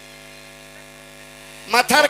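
Steady electrical hum made of several even tones, like mains hum through a sound system; a loud voice cuts in abruptly near the end.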